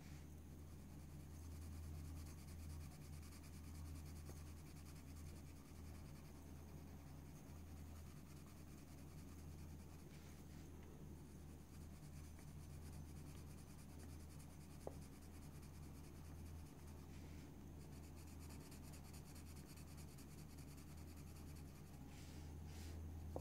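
Faint, steady scratching of a colored pencil shading on paper, over a low steady hum.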